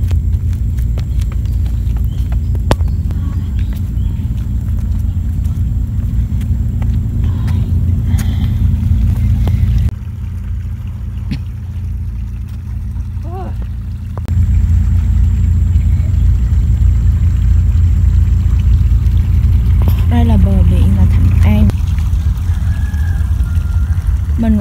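Wind buffeting the microphone on an open shore: a loud, uneven low rumble that drops suddenly about ten seconds in and comes back a few seconds later. Faint voices come through now and then.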